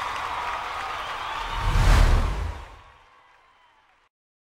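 Audience applause and cheering from a live concert recording trailing off as the music ends. Then a swelling whoosh with a deep boom, a trailer transition effect, peaks about two seconds in and fades out.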